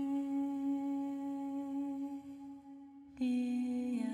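Film-score music: one long held, droning note that thins out and dips in level about two and a half seconds in, then a new, slightly lower note comes in sharply just past three seconds.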